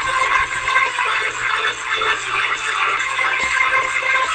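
Music playing from a small speaker, thin-sounding with little bass.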